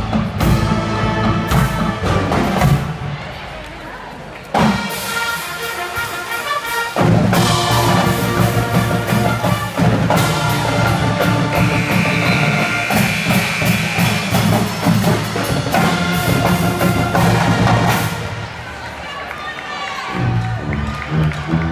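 Pep band playing live: sousaphones, trumpets and saxophones over bass drums and snare drums. The band drops back about three seconds in, comes back in full around four and a half seconds, and eases off again near the end.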